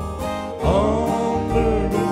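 Bluegrass-style instrumental break played on a Yamaha Tyros 2 arranger keyboard: plucked acoustic guitar over a steady bass beat, with a lead melody that swoops up and comes in about half a second in.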